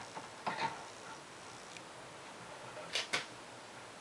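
A few light clicks and taps from handling small metal parts in a wooden block: a pair about half a second in and another pair about three seconds in, with faint room noise between.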